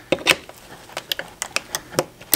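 Steel screwdriver tips clicking and scraping against a snap ring and the planetary gear carrier of a transfer case, a run of light metallic taps, as the snap ring is pried up to free the input shaft.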